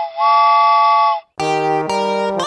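Cartoon steam-train whistle blowing a chord of several steady tones. The tail of one toot is followed by a second toot about a second long. Music begins about a second and a half in.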